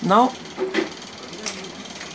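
One short, sharp click about one and a half seconds in, as parts are pushed into the plastic lid of a Karl Fischer titration vessel, over a steady faint hiss.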